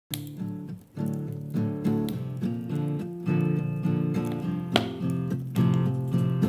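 Acoustic guitar playing the song's instrumental intro: a steady pattern of picked notes ringing over one another, with a few harder attacks.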